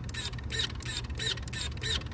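Shimano Ultegra Di2 electronic derailleur shifting up and down in quick succession, each shift a short motor whirr with a small whine, about two a second.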